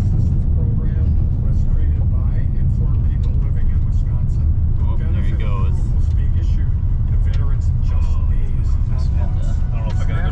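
Steady low road-and-engine rumble heard inside a vehicle's cabin while it drives on a gravel road, with faint voices underneath.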